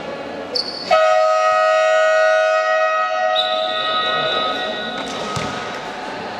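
A short high whistle blast, then a loud electronic horn in the sports hall, the scoreboard buzzer, sounding steadily for about four seconds before fading out.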